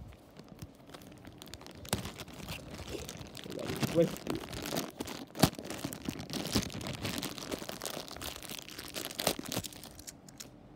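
Thin plastic Happy Meal toy bag being crinkled and torn open by hand: a dense crackle with many sharp snaps, loudest about four and five and a half seconds in.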